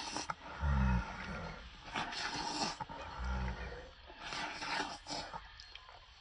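A person slurping noodles noisily in three bursts, with two short, low grunts of eating in between.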